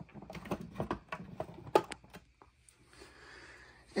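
A string of light clicks and knocks from handling the plastic body of an upright vacuum that is switched off, followed by a faint hiss.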